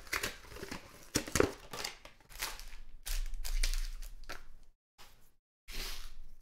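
An Upper Deck Trilogy hockey card box being torn open and its packs pulled out and handled: irregular crinkling, tearing and rustling of cardboard and wrappers, with a short pause about five seconds in.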